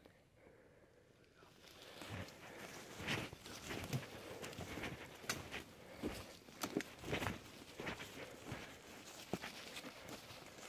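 Footsteps crunching and rustling through dry grass and forest-floor litter, starting about a second and a half in and going on at an uneven walking pace.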